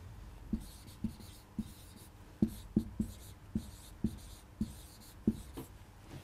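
Marker pen writing on a whiteboard: a run of short, separate strokes, about two a second.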